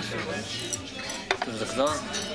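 Restaurant dining-room clatter: cutlery and dishes clinking, with one sharp clink a little after a second in.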